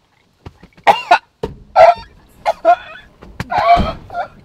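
A man coughing in a run of short, irregular throaty bursts, the last one longer.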